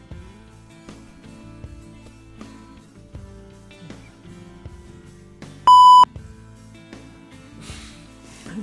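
Quiet background acoustic guitar music, cut a little past halfway by a single loud electronic bleep tone about a third of a second long, an edited-in censor-style bleep.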